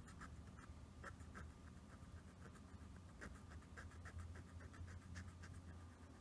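Faint, irregular scratching of a dry cotton wad held in metal tweezers, rubbed over a smartphone's earpiece grille to clear built-up gunk, over a low steady hum.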